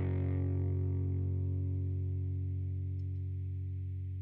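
Distorted electric guitar chord held and left ringing, slowly fading away with no new strums.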